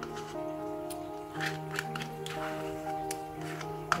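Background music with held notes that change every second or so. Under it, a few faint scrapes of a spoon in a plastic yogurt pot.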